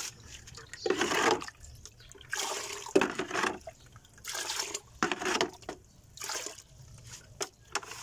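Water sloshing and splashing as a plastic dipper scoops from a bucket and pours, in several separate splashes with short pauses between.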